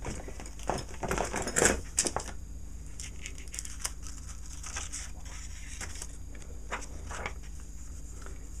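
Rustling and crinkling of a sheet of Letraset dry-transfer lettering being handled and moved over paper, busiest in the first two seconds or so, then a few scattered rustles, over a faint steady hum.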